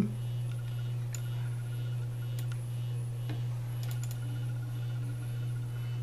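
Steady low hum of a Compaq Deskpro desktop PC running, with a few faint mouse clicks spread through it.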